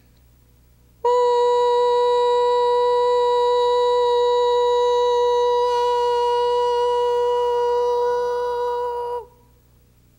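A woman's voice holding one steady, high hummed tone for about eight seconds, starting abruptly about a second in and dipping slightly in pitch as it stops.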